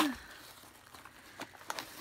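A mail package being opened by hand: faint rustling of the packaging, with a few small crackles and rips in the second half.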